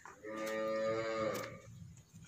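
A cow mooing once, a single steady-pitched call lasting a little over a second.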